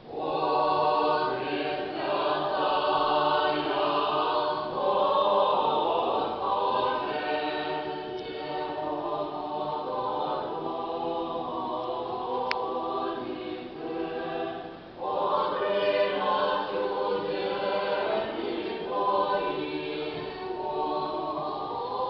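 Mixed a cappella church choir of men's and women's voices singing Russian Orthodox sacred music in held chords, coming in right at the start, with a brief pause between phrases about two-thirds of the way through.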